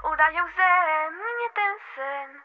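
Young girl's solo singing voice carrying a sung pop vocal line with held, gliding notes, over a backing track whose low bass fades out about halfway through.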